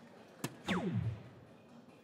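A soft-tip dart hits an electronic dartboard with a sharp click. Right after, the board's scoring machine plays a loud electronic tone that falls steeply in pitch as it registers a single 3.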